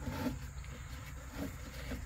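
Faint handling of a soft loop strap of seat-belt-style webbing as it is threaded through a tie-down hook, a couple of soft rustles over a low steady background rumble.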